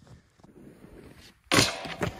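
Faint crunching steps in snow, then about one and a half seconds in a sudden loud thud and scrape as a rider jumps onto a snowskate and it slides off through the snow.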